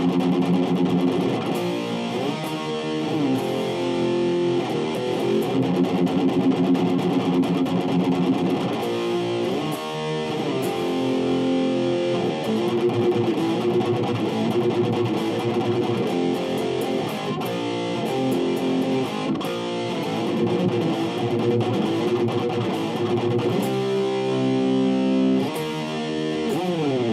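Distorted electric guitar playing a rock power-chord riff, moving between chord positions with slides.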